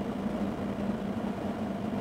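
A vehicle engine idling: a steady, even hum.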